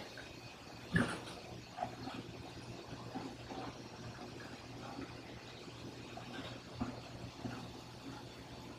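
Low steady hum of aquarium pumps and filtration equipment, with a sharp knock about a second in, another near the end, and a few fainter clicks in between.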